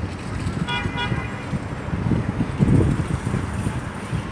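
A short horn toot about a second in, over a steady low rumble.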